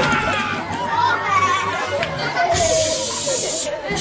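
Film soundtrack of background music with indistinct voices, and a steady hiss for about a second near the end.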